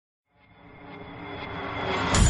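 A swell of sound fading in from silence about a third of a second in and growing steadily louder, with a few steady high tones, building into the start of loud music.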